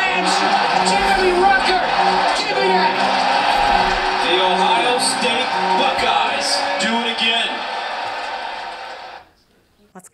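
Sports highlight reel soundtrack: music under excited play-by-play commentary, played back in a hall, fading out about a second before the end.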